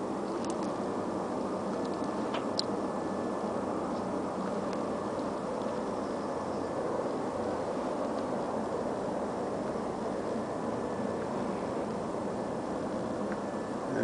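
Steady ambient background noise: an even hum and hiss with no distinct machine rhythm, and a couple of faint ticks.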